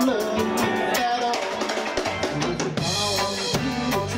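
Live reggae band playing: drum kit with steady snare and rimshot strokes, bass guitar and a male lead vocal, with a cymbal swell about three seconds in.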